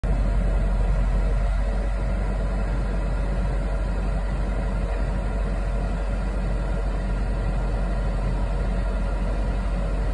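Steady low rumble inside a vehicle's cab, with the engine running and the vehicle at or near a standstill.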